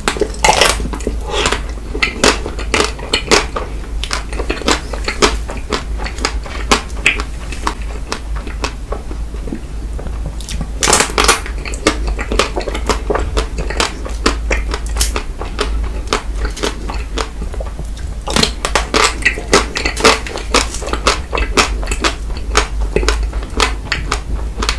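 Biting and chewing a chocolate-coated ice cream bar: the hard coating cracks in many sharp crunches, most densely at the start, about halfway through and again near the end.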